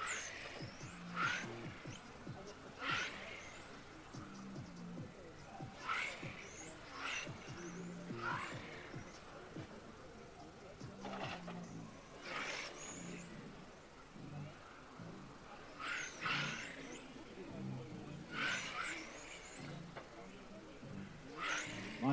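Electric 1/10-scale touring cars with 17.5-turn brushless motors racing past: a high motor whine that falls in pitch, repeating every second or two as cars go by and brake, over faint background music.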